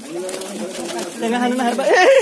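Pigeons fluttering and flapping their wings as they land on a hand held out with food. A man's drawn-out, laughing exclamation runs over them and grows louder near the end.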